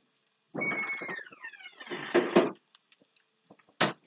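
Refrigerator door opening with a brief squeak and then bumping shut about two seconds in, followed by a few light clicks and a sharp knock near the end.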